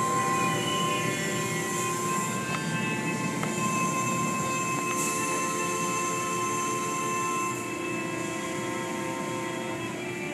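Automatic tunnel car wash heard from inside the car: water spray and cloth curtains washing over the glass and body, with a steady machine whine of several held tones that shifts pitch about three-quarters of the way through.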